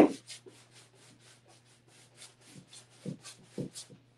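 A paintbrush scrubbing acrylic paint onto a large stretched canvas in quick, short strokes, about four or five a second, stopping just before the end. A few dull knocks, the loudest at the start, come from the brush and hand pressing against the canvas.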